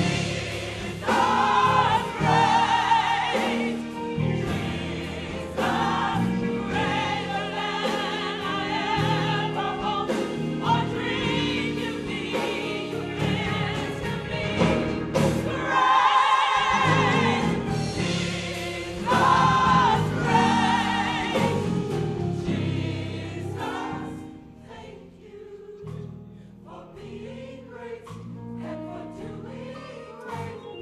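Gospel choir singing with a live band, electric bass among it. Near the end the music drops to a quieter passage.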